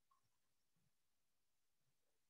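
Near silence: faint steady hiss of an idle call with no audible sound events.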